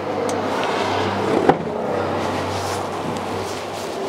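Steady low hum and rumble of a motor vehicle engine running nearby, with a single sharp knock about a second and a half in.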